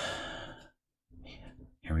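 A man's breathy sigh trailing off after his speech, fading out within the first second. A fainter noise follows before he starts speaking again near the end.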